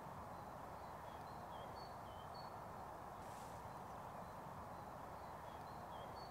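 Faint outdoor ambience: a steady background hiss with a small bird's short, high notes repeating every half second or so.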